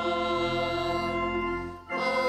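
A small vocal group singing a hymn in held, sustained notes over organ accompaniment, with a brief break between phrases shortly before the end.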